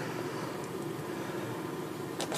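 Steady background hiss of room noise, with no distinct events.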